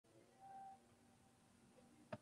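Near silence: faint room tone, with a brief faint tone about half a second in.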